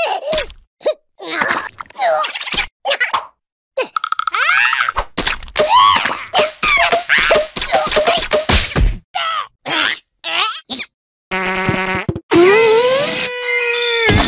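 Cartoon characters' wordless vocalizations, grunts, squeals and yelps that bend up and down in pitch, come in quick short bursts, mixed with comic sound effects. Near the end a held tone rises and then levels off.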